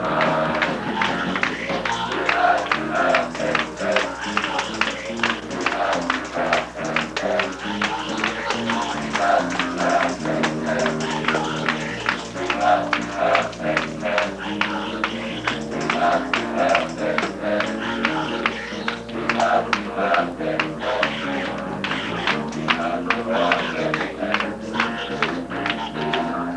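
Up-tempo gospel praise-break music: a youth choir sings with a boy leading on microphone, over fast, even hand clapping, tambourine and instrumental backing.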